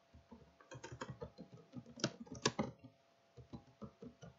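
Typing on a computer keyboard: a quick, uneven run of key clicks for about two and a half seconds, a brief pause, then a few more keystrokes near the end.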